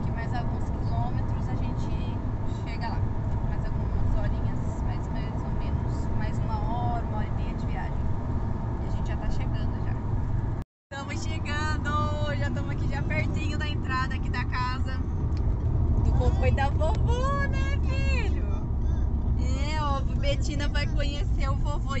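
Steady road and engine rumble inside a moving car's cabin, with voices over it. The sound drops out briefly about halfway through at an edit cut.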